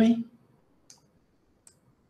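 A man's voice trailing off, then near silence broken by two faint, short, sharp clicks, the first about a second in and the second under a second later.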